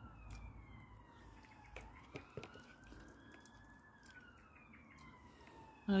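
Faint emergency-vehicle siren wailing, its pitch sliding slowly down, then up, then down again, with a few soft clicks over it.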